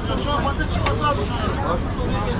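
Indistinct voices talking over a steady low rumble of street and shop noise, with a single sharp click about a second in.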